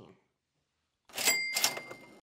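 A short edited-in sound effect: two quick clattering hits about a third of a second apart, with a bright ringing bell tone held under them. It starts out of dead silence about a second in and cuts off sharply just after the second hit.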